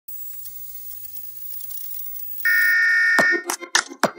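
Old-television sound effects: faint static hiss, then about two and a half seconds in a loud steady beep like a test-pattern tone. The beep ends in a sharp falling sweep, and a music track with a beat starts near the end.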